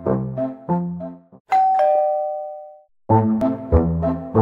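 Bouncy keyboard background music is broken about a second and a half in by a two-note doorbell chime, a higher note then a lower one, that rings for about a second. The music breaks off briefly and starts again.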